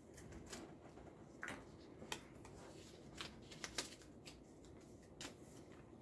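Faint crackling and rustling of a folded paper slip being unfolded by hand, in scattered small clicks.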